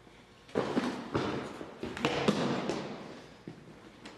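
A brief scuffle of two men grappling: several thuds and footfalls on a hard floor, with clothing and gear rustling, in a run of bursts from about half a second in to about three seconds.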